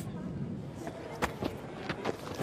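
Faint, steady cricket-ground ambience picked up by the broadcast field microphones, with a few soft knocks in the second half.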